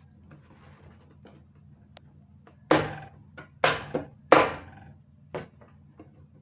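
Wooden A2 drawing board being handled: three loud wooden knocks in quick succession in the middle, then a lighter one, as the board and its frame are tilted and moved, with faint rustling between.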